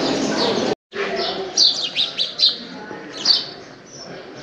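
Small birds chirping in short, high calls, a cluster of several about a second and a half in and one more near the end, over a steady background. Under a second in, an earlier stretch of ambient noise cuts off abruptly.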